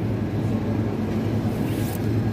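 Steady low electrical hum of supermarket refrigerated meat cases and store ventilation, with a brief rustle near the end.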